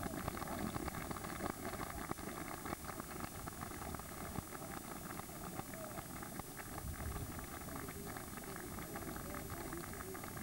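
Steady rumbling hiss with frequent faint crackles: the background noise of an outdoor camcorder recording, with no clear event standing out.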